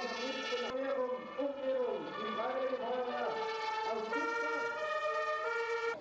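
Fire truck sirens sounding, several sustained tones overlapping and dipping and rising in pitch.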